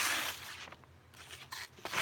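A sheet of lined notebook paper rustling as it is handled against a knife blade. A brief rustle at the start fades away, then faint crinkles follow.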